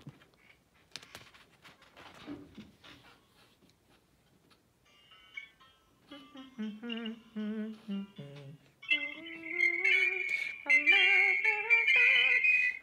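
A few seconds of faint handling noise, then a voice humming a low tenor/bass practice line with vibrato from about six seconds in. About nine seconds in, much louder accompaniment music comes in under it.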